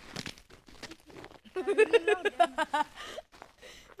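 Clothing fabric rustling and rubbing against the phone's microphone, with a child's high voice in short choppy bursts for about a second in the middle.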